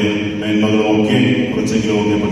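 A man's voice intoning in a chant-like way, with long held tones and only brief breaks.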